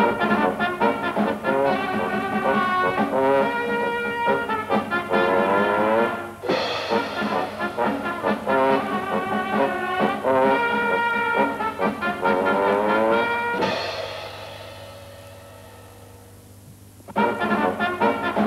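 Brass music with sliding notes, broken by two cymbal crashes about seven seconds apart. After the second crash the music dies away, then starts again near the end.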